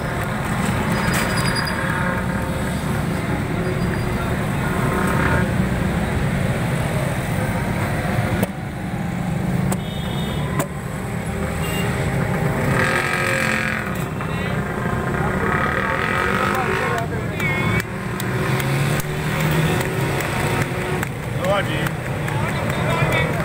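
Busy roadside street ambience: a steady hum of traffic with people talking in the background and a couple of sharp knocks partway through.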